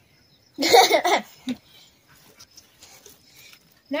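A child's short, loud vocal outburst about a second in, like a squeal, with faint high-pitched insect chirping in the background.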